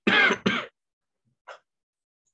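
A person clearing their throat in two quick parts, followed by a brief fainter sound about a second and a half in.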